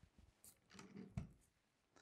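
Near silence with faint handling sounds of a rifle being settled on its rest, and one short click a little after a second in.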